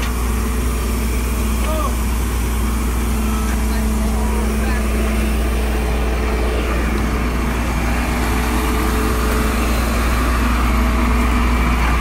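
Flatbed tow truck's engine running steadily, a low drone with a steady hum over it.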